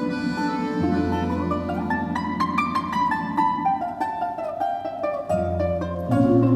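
Russian folk-instrument orchestra playing, led by a solo balalaika whose plucked melody climbs and then steps back down over held low notes, with bayans (button accordions) in the accompaniment.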